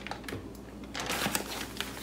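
Soft crinkling of a plastic zip-top bag with scattered light clicks as flour is spooned out of it into a food processor bowl.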